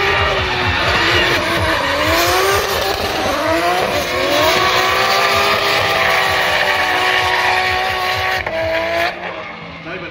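Drift cars sliding through a corner in tandem, engines revving up and down hard against the limiter over a haze of spinning, squealing tyres. The sound drops away about nine seconds in.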